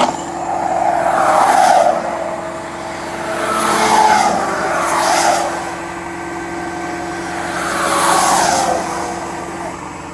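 Traffic passing on a wet highway, three vehicles swishing by in turn, each swelling and fading with a falling pitch. Under them a steady hum from the flatbed tow truck's hydraulic winch, running as it pulls the car onto the bed.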